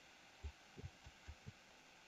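Near silence: room tone, with a handful of faint, brief low thuds in the first second and a half.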